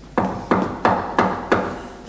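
Five hard knocks on a door in a steady rhythm, about three a second, each ringing briefly.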